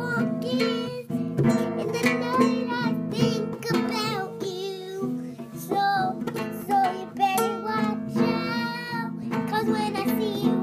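A child singing while strumming a small acoustic guitar in a steady strumming rhythm. The strumming stops briefly about halfway through, then picks up again.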